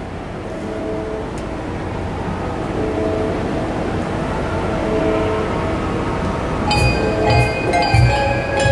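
Handbell and handchime ensemble playing: soft sustained chords swell slowly, then near the end bright, ringing handbell strikes come in together with low thumps.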